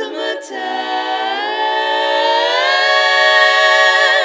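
Women's barbershop quartet singing a cappella in close four-part harmony. The voices glide upward together and swell into a long, held chord through the second half.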